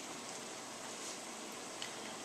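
Steady hiss of kitchen room tone, with one faint click near the end.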